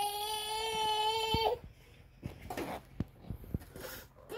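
A baby crying: one long, steady wail that cuts off about a second and a half in, followed by a faint whimper and a few small clicks.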